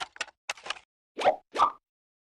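Logo-animation sound effects: a quick run of short clicks and pops, then two louder cartoon-style plops about a second in, the first sliding up in pitch.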